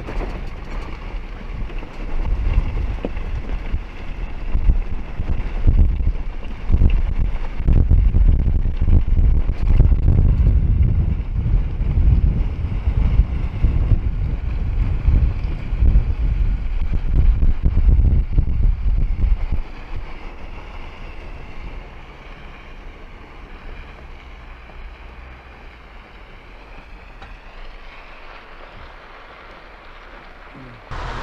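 Jeep Gladiator driving on a dirt track, with heavy, gusty wind buffeting the microphone. The rumble drops off sharply about two-thirds of the way through as the truck slows and comes to a stop, leaving a much quieter, steady sound.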